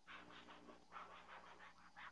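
Near silence: faint room tone with a soft, even rhythm of puffs, about six a second, and a low steady hum.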